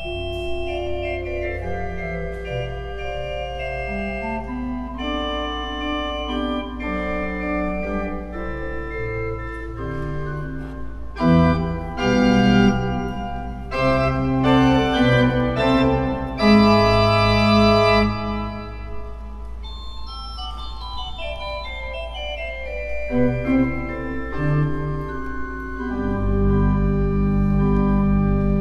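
Two-manual organ with pedals playing sustained chords over a held low pedal note. It swells louder in the middle and again near the end.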